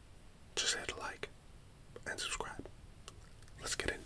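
A man whispering close to the microphone in three short phrases, with a couple of faint clicks between them.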